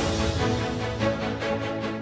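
News headlines theme music with a steady beat and held notes.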